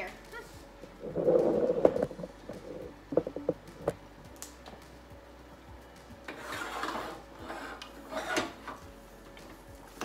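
Wooden spoon stirring and breaking up browning ground beef, onion and garlic in a stainless steel saucepan on a gas burner: scraping and knocking against the pot in bursts, the loudest about a second in, with a few sharp taps a couple of seconds later.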